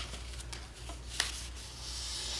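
Faint rustle of a sheet of paper being folded and creased by hand, with one light click just over a second in, over a low steady hum.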